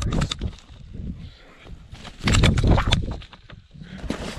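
Handling noise, rustling and knocks from a handheld camera being jostled as someone moves hurriedly through undergrowth. It comes in two loud, rough bursts, a short one at the start and a longer one about two seconds in.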